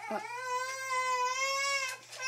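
A baby crying in one long, high wail of nearly two seconds, set off by an older toddler taking her toy drill away.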